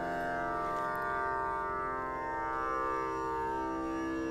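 Tanpura drone alone: its strings plucked in turn, giving a steady, even hum.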